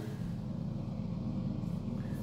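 A steady low hum that holds level throughout, with no clicks or changes.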